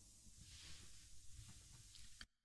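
Near silence: faint low background hum and hiss in a pause of the narration.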